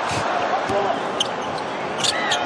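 Basketball being dribbled on a hardwood court, a few bounces heard over the steady noise of an arena crowd.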